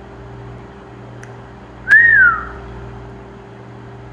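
A single short whistle-like tone about two seconds in, starting with a click, rising briefly and then gliding down in pitch over about half a second, over a steady low hum.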